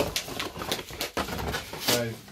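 Cardboard packaging being handled as an inner box is slid out of its sleeve: a run of scrapes, rustles and light knocks, the loudest scrape near the end.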